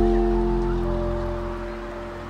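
Background music: a held chord over a deep bass note, slowly fading.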